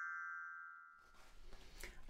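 A children's colour-coded glockenspiel's metal bars ringing after being struck, the tone fading away about a second in: the signal to turn the page.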